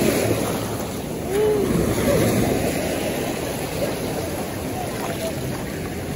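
Small waves washing up the shore and swirling around bare feet at the water's edge, a steady rush of surf.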